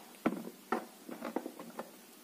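Clicks and taps of plastic Play-Doh toy parts being handled, with two sharper knocks in the first second followed by several lighter taps.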